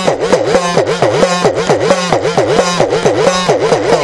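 Udukkai, the Tamil hourglass drum, struck rapidly by hand in a quick run of beats, its pitch swooping up and down about three times a second as the lacing tension is squeezed and released.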